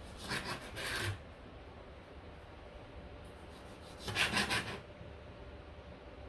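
Chef's knife slicing through cucumber onto a plastic cutting board: two short runs of a few quick cuts, one right at the start and one about four seconds in.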